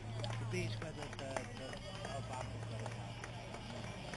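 Indistinct chatter of roadside spectators over a steady low hum, with a few scattered clicks.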